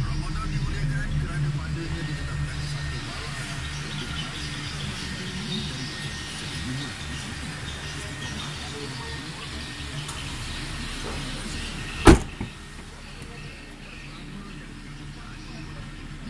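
Perodua Bezza 1.3's engine idling with a steady low hum that gradually fades. About twelve seconds in comes a single loud thump of a car door being shut.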